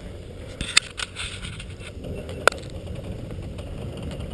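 Skis and poles on packed snow: a low, steady scraping hiss with a few sharp clicks, the loudest about two and a half seconds in.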